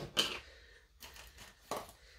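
Faint handling sounds of plastic paint cups: a few light clicks and knocks, with a short scuffle about a second in, as the next cup of paint is picked up.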